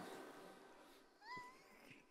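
Near silence, broken about a second in by one faint, short, high-pitched squeak that rises and then holds.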